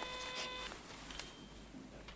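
A telephone ringing tone on the line after a number is dialled: one steady tone lasting about two-thirds of a second at the start, then faint hiss.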